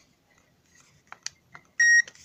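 Handheld infrared thermometer giving one short, high beep near the end as it takes a temperature reading. Two faint clicks come a little before it.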